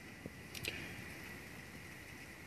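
Faint, steady rain with two light ticks in the first second.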